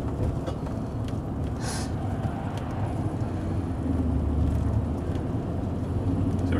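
Car driving on a road, heard from inside the cabin: a steady low rumble of engine and tyre noise, with a brief hiss just under two seconds in.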